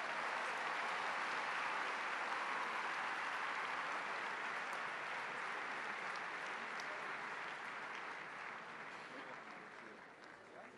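Large audience applauding steadily, dying away over the last couple of seconds.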